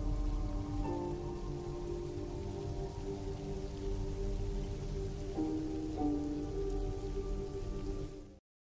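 Heavy rain pouring steadily on a street, under a slow film score of long held notes. The notes change to new ones about a second in and again near the end.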